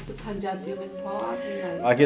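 A person's voice holding one long steady note for about a second, with a second, wavering voice-like sound above it.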